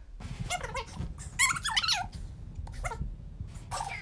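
Young women laughing in high-pitched squeals, in several short bursts. The longest and loudest comes about a second and a half in and falls in pitch.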